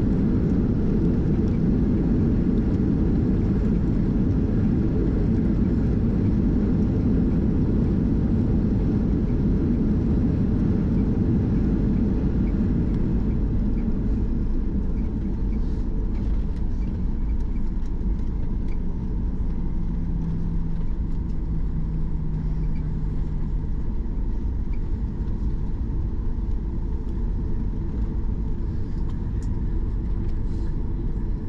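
Cabin noise of a Boeing 737-800 rolling on the ground after landing: a steady low rumble of engines and wheels that eases a little about halfway through, with a faint steady hum for a few seconds after that.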